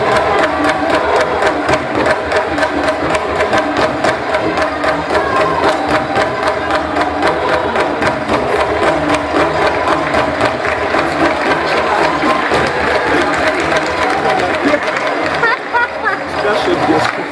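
Live music for a dance: a fast, steady percussion beat of drums and handclaps with a group of voices singing or chanting over it, breaking off near the end.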